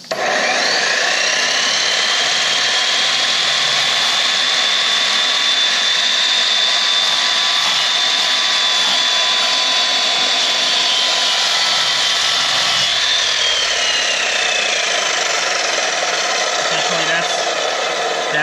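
Budget Harbor Freight sliding miter saw fitted with a diamond blade, running and grinding a scoring cut into a ceramic tile under a trickle of water: a loud, steady high whine with grinding. Near the end the whine drops in pitch, and the sound stops just before the end.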